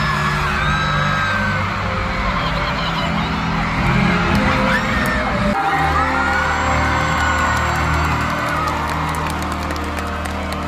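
Arena concert crowd screaming and cheering over instrumental music of sustained chords, which change about halfway through.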